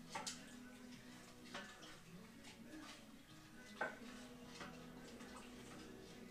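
A spoon stirring sugar into hot tea in a small stovetop pot, with a few faint clinks against the pot; the loudest is about four seconds in.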